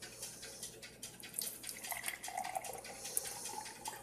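Coffee pouring from a glass French press into a mug, a faint trickle of liquid.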